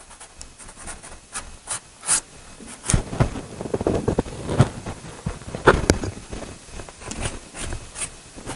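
Soft pastel sticks being handled: irregular clicks and short scrapes as sticks are picked out of a pastel box and stroked across the paper.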